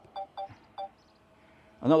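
Three short electronic beeps from a DJI drone's remote controller in the first second, each a pair of tones, followed by a faint steady tone. The man's voice comes in near the end.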